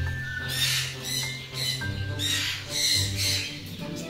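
Parrots squawking harshly, about four loud calls in a row, over background music with a steady bass line.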